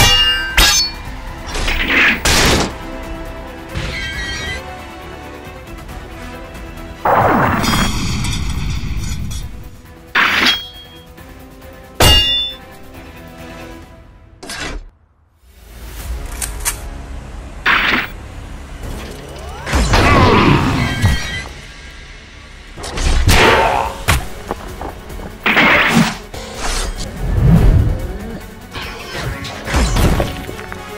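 Edited-in fight sound effects: repeated metal clangs of weapons clashing and heavy impact hits, over a dramatic music score, with a brief drop to near silence about halfway through.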